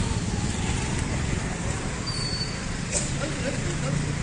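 Street traffic with motor scooters and motorcycles riding past close by, a steady engine and road rumble, with crowd voices mixed in.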